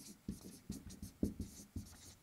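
Dry-erase marker writing letters on a whiteboard: a run of short, quick strokes, about four a second.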